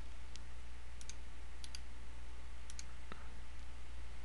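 Computer mouse button clicking: a few short clicks, mostly in quick pairs about a second apart, over a steady low hum.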